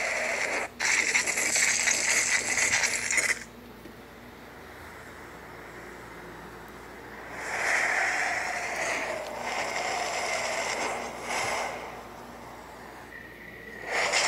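Opening sound effects of a music video heard through a phone's speaker: bursts of rushing noise, a long one for the first three seconds, another around eight seconds, a short one near eleven seconds and another at the end, with low hiss between.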